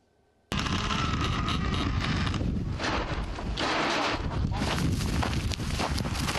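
Strong wind buffeting the microphone, with boots crunching over burnt, dry grass; it starts abruptly about half a second in and stays loud and gusty throughout.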